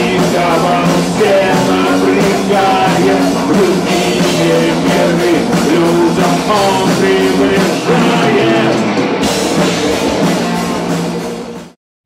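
Heavy metal band playing: electric guitars, bass guitar, drums and a singer's voice. The music fades out near the end.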